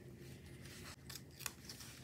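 Faint rustling and a few light paper ticks as stickers are handled, peeled from their sheet and pressed onto a planner page, the sharpest tick about one and a half seconds in.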